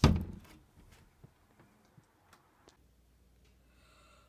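A small plywood closet door, newly hung on its hinges, swung shut with one loud thump at the start, followed by a few faint ticks.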